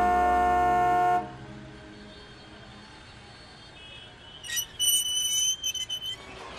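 A steady car horn honk sounding for about the first second, then fading into street background noise; short, choppy high-pitched tones come near the end.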